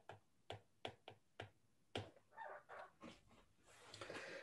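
Faint, irregular clicks of a stylus tapping on a tablet screen during handwriting, two or three a second, with a softer scratchy patch in the middle.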